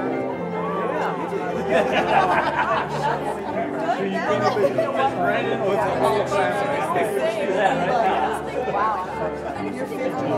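Many people chatting at once in a large hall over instrumental music with long held low notes: a congregation talking during the postlude at the end of a church service.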